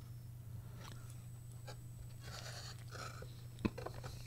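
Faint sounds of a person biting into and chewing a chicken hot dog in a soft bun, with scattered soft clicks and one sharper click a little past three and a half seconds.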